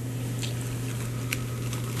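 A handheld lighter clicking twice, the second click plainer, over a steady low hum.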